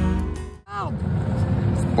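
A reggae song with singing fades out and stops about half a second in. A short falling vocal sound follows, then a steady hum of street and traffic noise in the open air.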